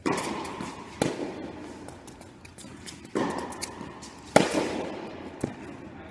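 Tennis ball struck by rackets and bouncing on a hard indoor court during a rally: about five sharp pops, each ringing on in the echo of a large hall. The loudest hit comes about four and a half seconds in.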